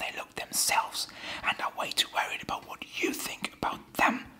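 A man whispering close to the microphone.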